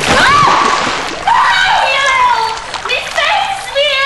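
Water from a glass splashes into a woman's face, followed by her shrieking and wailing in long, wavering cries.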